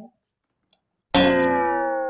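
A musical sound effect: after about a second of silence, a bright ringing tone starts suddenly and slides slowly down in pitch as it fades.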